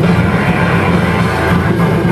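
Hardcore punk band playing live: distorted electric guitar, bass and drum kit, loud and dense without a break.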